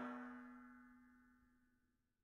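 The ringing tail of a metallic clang: several steady tones fading away over about the first second.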